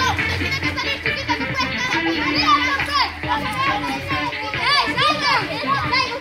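Many children shouting and calling out excitedly over one another, with music playing underneath.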